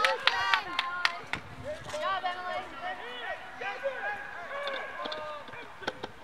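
Several voices shouting and calling out across an open field, overlapping short calls from players and spectators during a soccer match, loudest in the first second.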